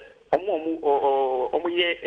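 Speech through a telephone line: a caller talking, the voice thin and cut off in the highs, with a short click about a third of a second in.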